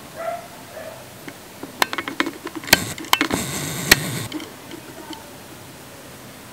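Camera handling noise: a cluster of sharp clicks and a short rustle between about two and four seconds in, as the camera is moved. Before it come a few short, faint pitched calls.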